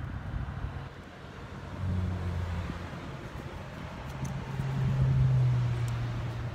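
A low engine hum that swells twice, about two seconds in and again, louder, from about four seconds, over faint outdoor background noise.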